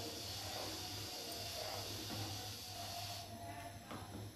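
Faint scraping and sloshing of a spoon stirring milk custard in a non-stick saucepan, easing off about three seconds in, over a steady low hum.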